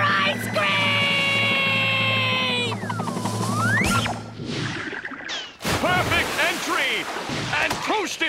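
A cartoon character's long, gleeful held yell as he falls, slowly dropping in pitch over a low steady musical hum, followed by a swooping whistle-like glide that dips and rises, then a sudden crash about five and a half seconds in as he lands.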